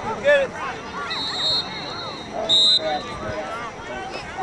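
Referee's whistle blown twice, a shorter, fainter blast about a second in and a louder one past the middle, over shouting voices of players and spectators.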